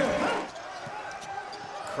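Arena crowd noise after a made basket, fading over the first half-second to a steady murmur. A few faint knocks of a basketball being dribbled on the hardwood follow.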